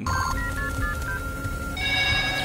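Telephone keypad tones: a quick run of short beeps at different pitches as a call is dialed, then a held tone, and a louder, higher electronic ring starting near the end.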